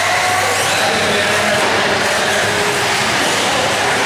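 Several 1/8-scale RC off-road buggies racing together, their motors making a high whine that keeps rising and falling in pitch as they speed up and slow down around the track.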